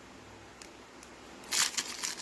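Foil wrapper of a Pokémon booster pack crinkling and tearing as it is pulled open by hand, starting about one and a half seconds in.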